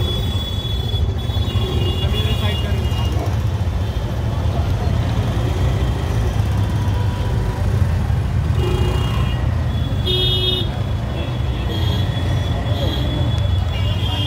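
Busy urban road traffic heard from a moving two-wheeler: a steady low rumble of engines and road noise. Short, high-pitched vehicle horn toots sound again and again, near the start, around two seconds in, twice around nine to ten seconds, and again near the end.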